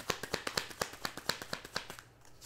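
A deck of tarot cards being shuffled by hand, the cards clicking against each other in a quick, even run of about ten snaps a second that stops near the end.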